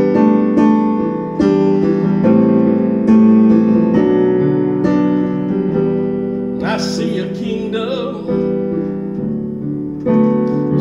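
Solo piano playing a slow worship-song passage without voice: sustained chords struck roughly once a second and left to ring.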